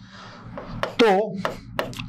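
A marker pen writing on a glass board: a scratchy rubbing for about the first second, then a couple of short clicks of the tip.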